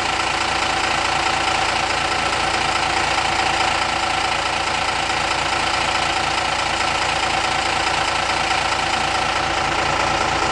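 Fire engine idling steadily, a constant engine drone with a fast low beat and a steady whine over it.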